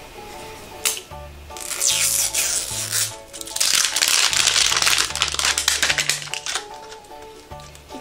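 Crinkling and tearing of a wrapper being peeled off a toy surprise ball, loudest through the middle of the stretch, over background music with steady bass notes.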